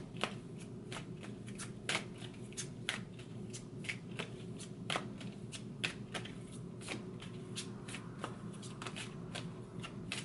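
A deck of oracle cards shuffled overhand from hand to hand: a run of short, irregular card slaps and flicks, about two a second.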